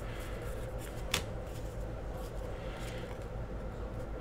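Trading cards being slid and flipped through by hand, faint, with one sharp tick about a second in, over a steady low hum.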